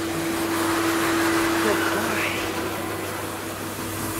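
K9000 dog-wash machine's hose dryer blowing: a steady rush of air with a constant hum underneath.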